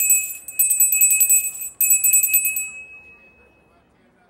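A small bell rung rapidly in two bursts, a brief break between them, then ringing out and fading: the signal at a speed-dating event to end the round and change partners.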